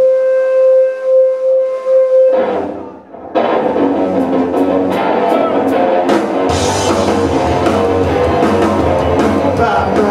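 Live rock band starting a song: a single held note sounds for about two seconds, then guitar and drums come in about three and a half seconds in, and the electric bass joins with a heavy low end about six and a half seconds in.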